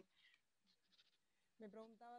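Near silence, then a woman's voice starts near the end with a short drawn-out sound leading into speech.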